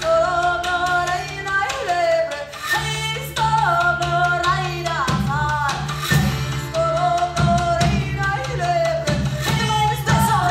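Live band music: women's voices singing a wavering melody over held low bass notes, with sharp percussive hits.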